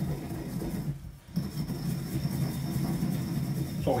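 Granite pestle grinding spice seeds in a heavy granite mortar: a continuous rough, gritty grinding, with a brief pause about a second in.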